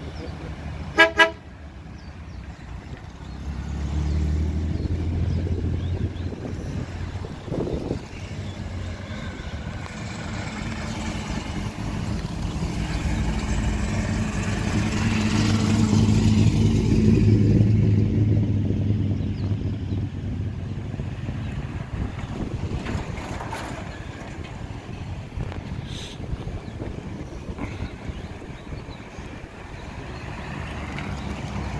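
Old Holden cars driving past one after another, engines running; a car horn toots once about a second in. The engine sound swells as the cars come near, loudest as a blue Holden sedan passes close midway, then fades.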